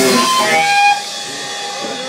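Live punk rock band playing the song's final moment: the full band cuts off about a second in, leaving electric guitar ringing on from the amp as a steady, held high tone.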